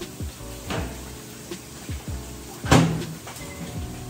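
A few light knocks, then a louder bang of a door shutting about two-thirds of the way through, over steady background music.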